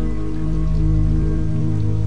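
Meditation music of sustained, layered drone tones held steady, over a soft even hiss like falling rain.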